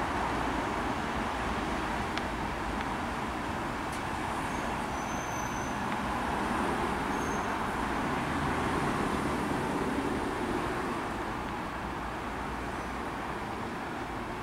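Enterprise passenger train pulling out, its diesel locomotive at the far end hauling the coaches away while wheels run over the rails. A steady rumble swells a little past the middle and eases toward the end.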